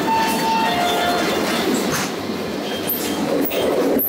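Steady background noise of a busy convenience store, with a two-note falling chime at the very start.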